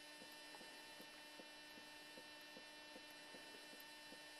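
Near silence: a faint steady electrical hum, with faint soft ticks about five times a second.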